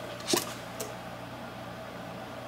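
Quiet room tone with a steady low hum, broken by one short rustling burst about a third of a second in and a faint click a little later.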